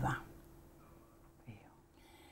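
A spoken phrase trails off, then a pause of near silence with faint room tone and a steady low hum, broken by one brief soft voice sound about one and a half seconds in.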